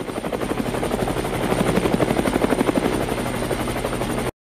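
Police helicopter sound effect: a rapid, steady rotor chop with a thin high whine over it, swelling in the first half-second as the helicopter comes in to land.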